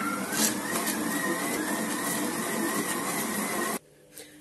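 Electric stand mixer kneading bread dough with its dough hook: the motor's whine climbs in pitch as it speeds up, then runs steadily, and cuts off suddenly shortly before the end.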